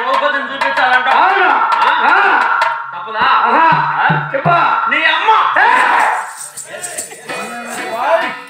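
A performer singing a verse in a loud, wavering voice to harmonium accompaniment, in the style of Telugu folk theatre. Thin metallic clinks come in near the end.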